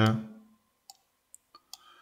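About four faint, short computer mouse clicks spread over a second, from selecting an op in a patch editor.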